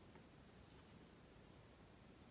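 Near silence: room tone with a few faint scratches and ticks of a beading needle and thread being drawn through seed beads.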